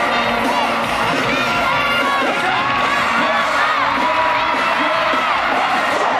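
Large stadium crowd of fans screaming and cheering, many high voices at once, over loud live concert music.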